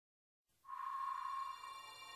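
A single clear ringing tone, steady in pitch, comes in about half a second in and fades away over about a second: the sound effect of a logo intro.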